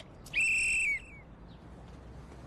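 A coach's whistle blown once in a short, steady blast of just over half a second.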